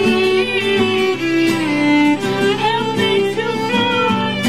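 An instrumental passage of an acoustic song played live by two instruments, with an acoustic guitar under a sustained melody line whose held notes slide and waver in pitch.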